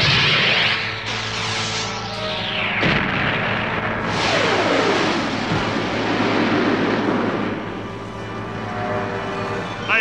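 Cartoon battle sound effects: loud rushing blasts with falling-pitch sweeps, one starting right away and another about four seconds in, over background music.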